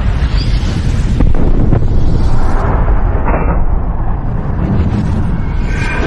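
Loud logo-intro sound effect: a continuous deep rumbling blast, like a fiery explosion, with a couple of sharp hits in it about a second in.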